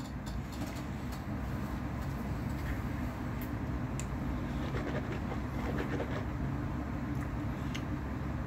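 Steady low hum of room background noise, with a few faint clicks as a water bottle is handled.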